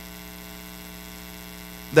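Steady electrical hum with a buzzy stack of even overtones, holding one pitch without change.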